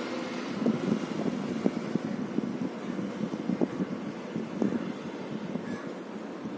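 A faint, muffled voice, likely a student answering from a distance, under steady low room noise.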